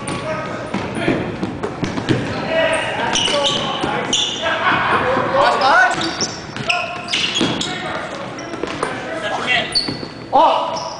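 Basketball bouncing on a hardwood gym floor amid the short, high-pitched squeaks of players' sneakers, in a large gym.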